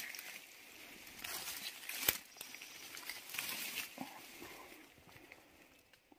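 Leaves and fern fronds rustling in uneven swells as the undergrowth around a mushroom log is brushed and handled, with one sharp snap about two seconds in.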